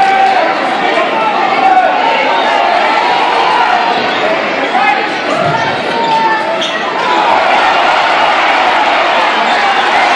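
Large crowd in a packed gymnasium during a basketball game: many voices talking and shouting at once, with a basketball bouncing on the hardwood court.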